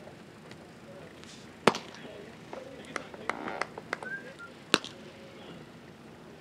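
Two sharp, loud pops about three seconds apart, the first under two seconds in. Between them comes a run of softer clicks and knocks, with a brief high chirp.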